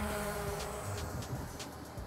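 Multi-rotor drone's propellers buzzing with a steady tone that fades out over the first second, as background music with light percussion comes in.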